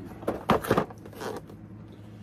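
A cardboard board-game box is handled and moved right past the microphone. It makes a few rustling, scraping knocks in the first second and a half.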